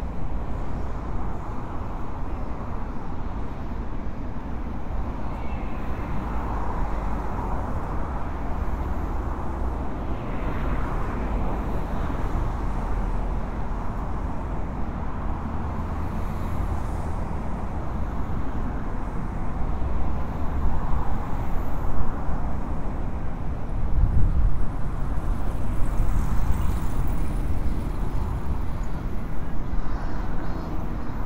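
Steady road traffic noise of passing cars, a low rumble that grows a little louder and more uneven in the last third.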